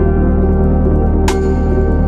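Ambient new-age background music with long held tones and a single sharp, bright accent a little past a second in.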